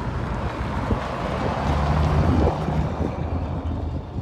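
A car's engine hum and road noise at low speed on broken asphalt, with wind on the microphone; the low engine note is strongest about two seconds in.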